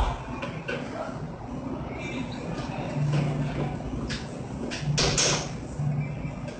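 Metal utensil scraping and knocking against a pan as a sauce is stirred, with a cluster of sharp strokes in the second half, over a low background hum.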